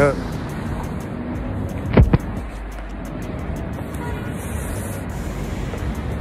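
Steady rumble of road traffic, with two sharp knocks close together about two seconds in.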